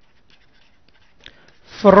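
Faint scratching of a stylus writing on a drawing tablet, with a small click a little past the middle.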